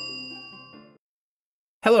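A bell-like notification ding sound effect and the last notes of an intro jingle ringing out and fading away, gone about a second in. A voice starts speaking near the end.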